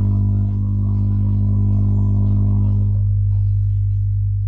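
Loud, steady low electrical hum with a stack of overtones, like mains hum picked up on an audio line; its upper overtones thin out after about three seconds.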